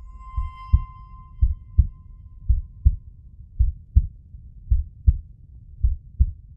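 Heartbeat sound effect: a slow, steady double thump, one pair about every second. A bell-like ringing tone sounds over it at the start and fades away within about three seconds.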